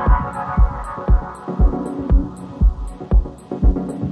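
Dub techno: a steady four-on-the-floor kick drum at about two beats a second, with short hi-hat ticks between the kicks and a sustained synth chord that fades out through the first half.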